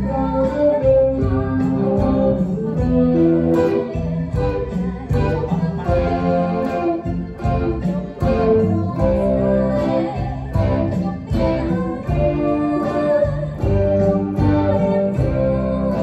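Electric guitar, a solid-body with humbucker pickups, playing a picked lead melody over fuller recorded backing music with a steady bass line.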